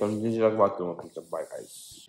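A man's voice speaking briefly, then a high hiss lasting about a second that cuts off suddenly.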